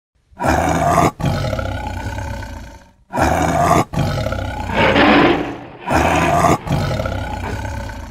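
A big cat roaring: three long, rough roars one after another, each with a brief catch partway through.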